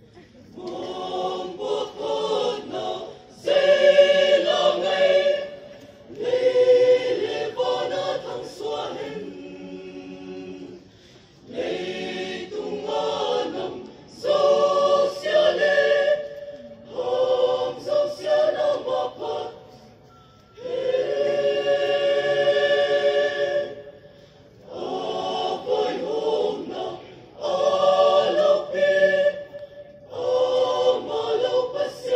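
Mixed choir of men and women singing together, in phrases a few seconds long with short breaks between them.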